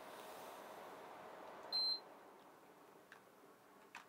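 A single short, high electronic beep about two seconds in, over faint room hum that drops away at the beep; a couple of faint clicks follow.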